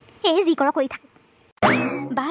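A brief line of a cartoon character's speech, then about a second and a half in a loud cartoon transition sound effect starts suddenly: a quick rising glide that holds at a high pitch, like a boing.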